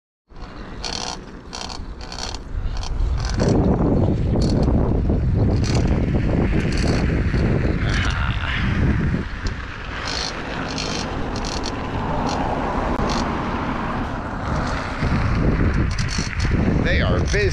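Wind buffeting the microphone while travelling along a road, a heavy low rumble that sets in about three seconds in, preceded by a row of light regular ticks.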